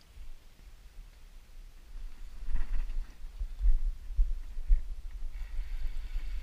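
Wind buffeting the camera microphone: an uneven low rumble that gets stronger from about two seconds in.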